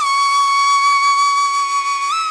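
Background music: a flute-like lead instrument holding one long, steady high note.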